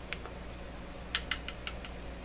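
Two faint ticks, then a quick run of about six small, sharp mechanical clicks in under a second, from hand tools and parts being handled at a tube-radio chassis.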